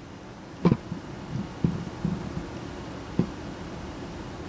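A few short clicks and taps from a stainless steel revolver being handled, the clearest about a second in and another near the end, over a steady low room hum.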